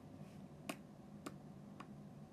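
Three light, sharp clicks or taps about half a second apart, faint over quiet room tone.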